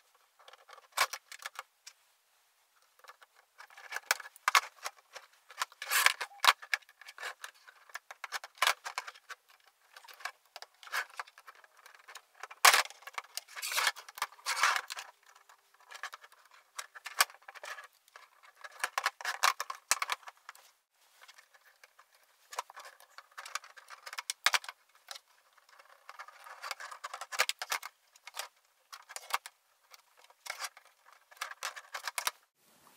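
Small metal hand tools and parts clicking, scraping and rattling against a plastic RC car chassis during assembly, in irregular bursts with a sharper knock about halfway through.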